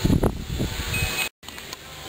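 Rustling and handling noise on the camera microphone, broken off by a sudden brief dropout, then faint outdoor background.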